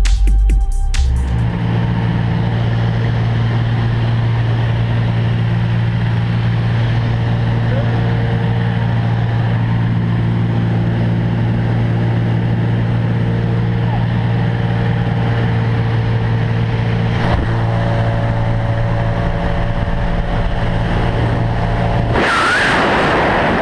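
Music cuts out about a second in. Then the piston engine and propeller of a single-engine, high-wing jump plane drone steadily at one even pitch, heard from inside the cabin. A single sharp click comes near the end.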